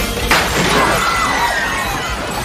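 Glass smashing in a single loud crash about a third of a second in, with the breaking glass ringing on as it dies away, over a bar band's music.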